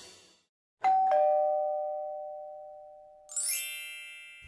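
Two-tone doorbell chime: a high note and then a lower one a moment later, both ringing out and slowly fading. Near the end a rising, shimmering sound effect sweeps in.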